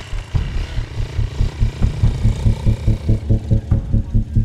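Low, rhythmic throbbing at about four pulses a second.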